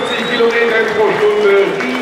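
A man's voice talking over the track's public-address loudspeakers, with no engine running.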